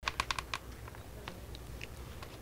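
Fingernails tapping on a smartphone screen while texting: a quick run of five or six sharp clicks in the first half second, then a few fainter taps.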